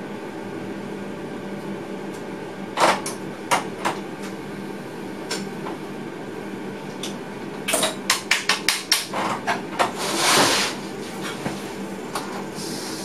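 Sharp clicks and knocks inside an electric train's cab as it stands at a platform, over a steady hum from the cab equipment. A few come about three seconds in, then a quick run of about a dozen from about eight seconds in, followed by a short hiss about ten seconds in.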